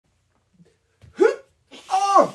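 A man's short vocal yelp about a second in, rising then falling in pitch, then his voice starting up again just before the end.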